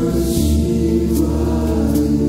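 Slow meditation music: sustained choir-like voices over held, droning low tones.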